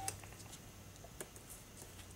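A small 12 V DC gear motor's faint whine cuts off right at the start as the momentary toggle switch is released. Then a few faint clicks of the toggle switch and wires being handled and set down, over a low steady hum.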